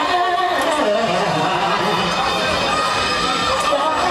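Loud dance music from a DJ set in a club, with the crowd shouting and cheering over it.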